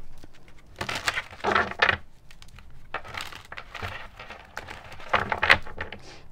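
A deck of tarot cards being shuffled by hand, with several short spells of rustling card noise.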